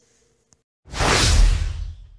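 Whoosh transition sound effect: a single rushing swell of noise with a deep low end, coming in about a second in and fading away over about a second.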